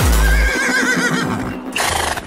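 A horse whinny sample in an early hardcore track: a wavering, high neigh rises over the music as the kick drum drops out about half a second in. Near the end comes a short burst of noise.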